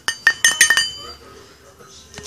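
A few quick, sharp clinks of hard objects striking each other, each with a brief ringing, within the first second, then it falls quiet.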